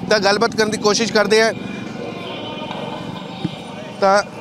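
A man speaking for the first second and a half, then steady street background with passing traffic, and a single brief knock near the end.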